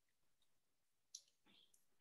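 Near silence with a single faint click about a second in, from the small handheld audio player being handled.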